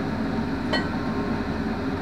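A metal spatula lifting a toasted brioche bun off a flat-top griddle and setting it on a plate, with one light clink about three-quarters of a second in, over a steady hum.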